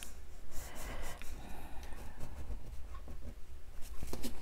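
Hands pressing and rubbing washi tape down onto a paper card: soft, irregular rubbing and rustling of paper, with a few faint small ticks.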